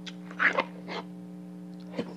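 Close-miked eating sounds: a few short, wet chewing and mouth sounds while a metal spoon scoops curry and rice in a plastic bowl, the loudest about half a second in, with a short click near the end.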